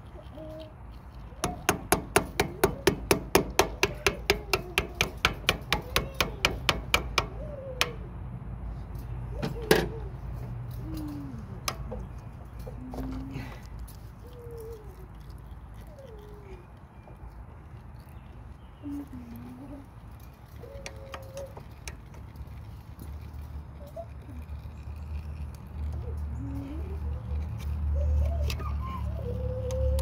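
A hand tool working at a stuck mower oil filter: a fast run of sharp metal clicks, about four a second, for about six seconds, then two louder single knocks. A low rumble builds near the end.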